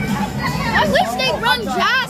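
Many children shouting and chattering at once, their high voices overlapping throughout, over a steady low hum.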